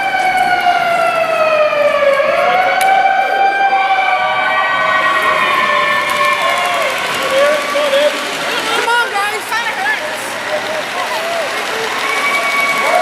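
Youth hockey players cheering: a long, high 'whoo' that slides down in pitch, rises and slides down again over the first six seconds, then shorter wavering whoops over the hubbub.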